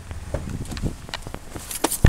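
A 2006 Dodge Grand Caravan's V6 idling faintly under a scatter of clicks, knocks and footsteps as someone climbs in at the open driver's door, the loudest knock near the end.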